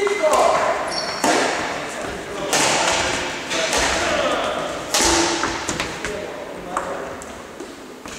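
Badminton rackets striking a shuttlecock in a rally: sharp hits about one to two and a half seconds apart, each echoing in a large sports hall.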